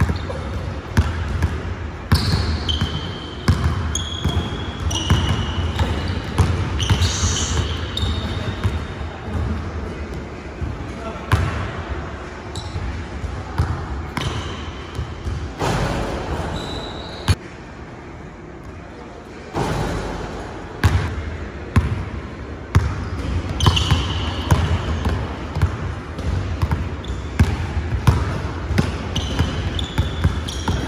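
A basketball dribbled on a hardwood gym floor during one-on-one play: a run of sharp bounces, with short high squeaks from sneakers. There is a brief lull about two thirds of the way through.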